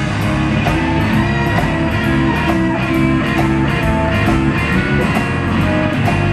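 Live blues band playing an instrumental stretch: electric guitar over a steady drum beat.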